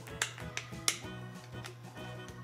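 Background music with a steady beat, over which the plastic lid of a Play-Doh can gives two sharp clicks as it is pried at by hand, the second louder.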